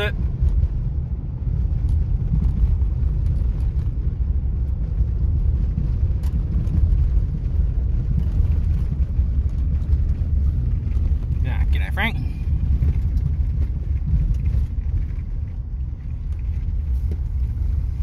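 Steady low rumble of a car driving on a gravel road, heard from inside the cabin. A brief voice is heard about twelve seconds in.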